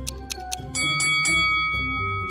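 Quiz countdown music: the ticking stops as the timer runs out, and about three-quarters of a second in a bright bell-like chime rings and holds over the backing music, signalling time's up.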